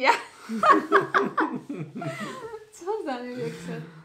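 A woman and a man laughing together, with a few spoken words mixed in.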